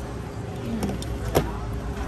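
A steady low background rumble, with one sharp clink a little over a second in and a couple of fainter ticks just before it, typical of a metal fork touching a plate.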